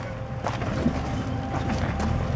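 Off-road vehicle engine running low and steady while crawling over a rocky trail, with a few light knocks and wind buffeting the microphone.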